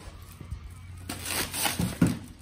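Thin plastic carry-out bags rustling and crinkling as they are handled and set down on a doormat, louder in the second half.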